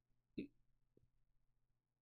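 Near silence between two stretches of speech, broken once, just under half a second in, by a single brief soft sound.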